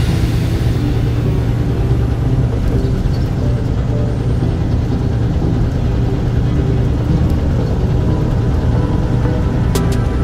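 Steady low drone of a car driving at road speed, engine and tyre noise heard from inside the cabin, with music playing along with it.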